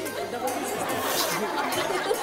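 Studio audience chatter: many overlapping voices in a large hall, with no single voice standing out.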